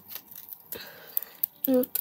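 Small clicks and light rustling of packaging as a hair accessory is worked loose from its packet, with a short hummed 'mm' near the end.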